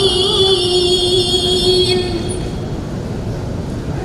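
A woman reciting the Qur'an in melodic tilawah style holds one long, steady note that ends about halfway through. After that comes a pause with only a steady background rumble.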